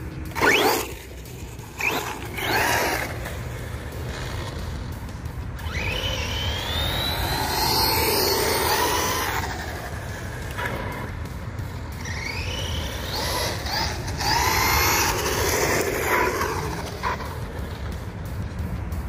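Redcat Camo X4 RC truck's electric motor whining as it runs on a 3S battery, rising and falling in pitch as it speeds up and slows, loudest twice in the middle, over tire hiss on wet asphalt.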